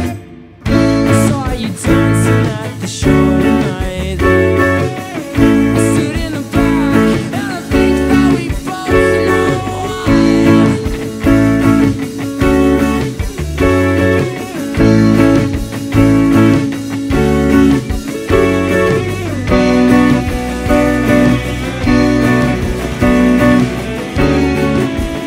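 Black Squier Stratocaster electric guitar playing rhythmic chords along with a full band track of bass and drums in an instrumental stretch of the song. The music drops out briefly just at the start, then runs on without singing.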